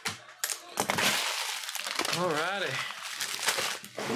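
Foil trading-card pack wrapper crinkling and being crumpled: a dense rustle with sharp crackles that starts about a second in. A person's voice is heard briefly in the middle.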